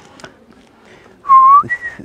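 A man whistling through pursed lips: a held note comes in just past halfway, then steps up to a higher held note near the end.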